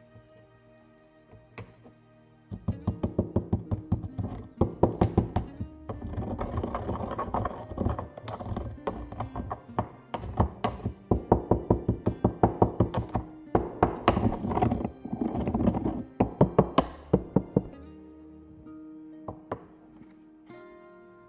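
White stone pestle pounding whole cloves in a stone mortar: rapid knocks, about four or five a second, in runs of a few seconds each, starting a couple of seconds in and stopping near the end. Soft background music plays underneath.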